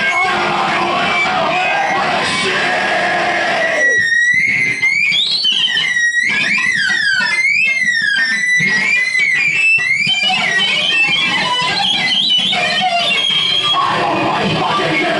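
Live harsh noise / power electronics played loud through amplifiers: a dense wall of distorted electronic noise. From about four to ten seconds in it thins to high squealing tones that glide up and down, then the dense noise returns.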